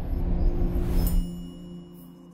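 Synthesised logo sting: a held low chord over a deep rumble that swells to a peak about a second in, where a rush of noise and high ringing tones come in, then fades away.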